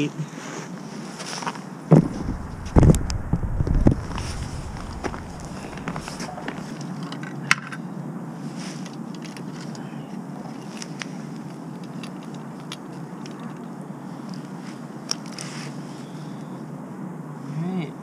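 A cluster of heavy thumps and knocks about two to four seconds in, then steady outdoor background noise with scattered clicks and scrapes, from an ice angler handling rod, reel and gear at an ice hole.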